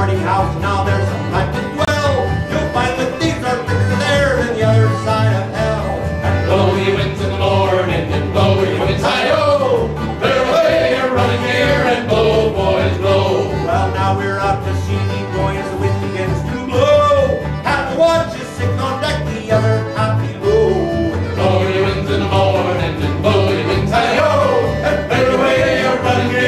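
An acoustic folk band playing and singing a whaling sea shanty: a lead voice over strummed banjo and acoustic guitar, with accordion and upright bass.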